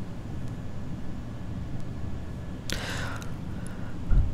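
Quiet steady low hum of the recording's background, with one brief soft rush of noise about three seconds in.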